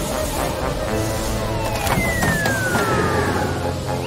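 Cartoon tornado sound effect: a steady rushing roar of wind, with one long falling whistle in the middle.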